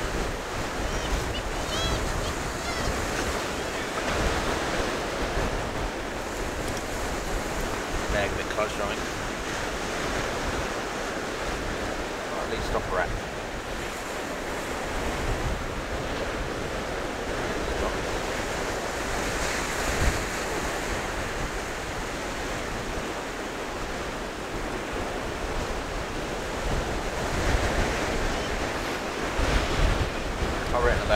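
Sea waves breaking on the beach in a steady wash of surf, with wind buffeting the microphone in gusts that grow stronger near the end.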